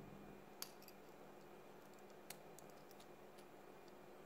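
Faint, sharp clicks of a disassembled wall light switch's small plastic housing and metal contact parts being handled: one clearer click about half a second in, another just past two seconds, and a few softer ones.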